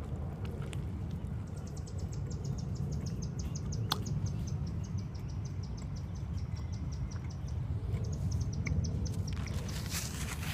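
High, rapid chirping, about five short chirps a second, running in two long trains with a brief break, over a steady low background rumble. A single sharp click is heard about four seconds in.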